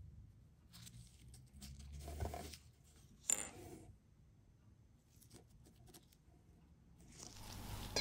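Faint handling noises of gloved hands working with a small metal badge and a watch box: a soft rustle, then one sharp click about three seconds in, then a rustle building near the end.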